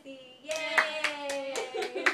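A quick run of hand claps, about five a second, starting about half a second in.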